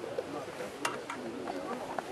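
Low background chatter of people talking, with a sharp click a little under a second in.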